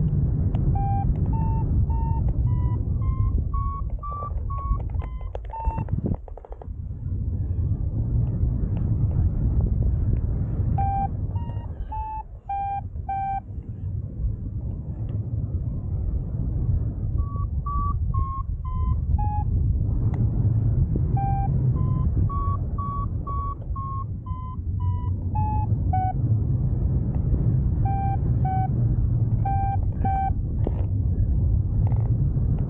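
Paragliding variometer beeping in several runs of short beeps whose pitch steps up and down with the rate of climb, with gaps between runs. Under it, a steady low rush of wind on the microphone in flight is the loudest sound.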